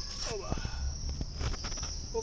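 Crickets chirping in a steady high trill, with a short falling pitched call in the first half-second and low rumbling from the microphone being handled.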